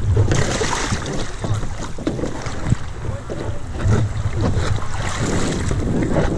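Moving river water rushing and splashing around an open canoe, with wind buffeting the microphone in a low rumble: a steady, noisy rush.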